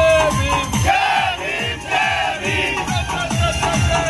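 Loud DJ music with a deep, pounding bass beat about three times a second, and a group of men shouting and cheering over it.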